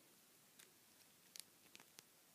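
Near silence: room tone with a few faint, short clicks, a pair of them near the middle, from a plastic action figure being handled.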